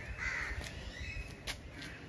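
A crow cawing once, a short harsh call near the start, followed by a few sharp clicks.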